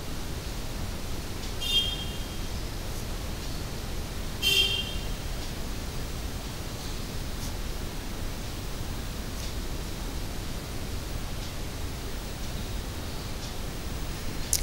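Steady hiss and room noise from an open microphone, with two short, higher-pitched sounds about two seconds and four and a half seconds in.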